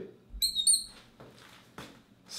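Marker pen squeaking on a glass lightboard while writing a digit: two short high squeaks about half a second in.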